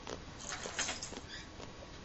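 Baby goat snuffling: several short, breathy snuffles through the nose, the loudest a little under a second in.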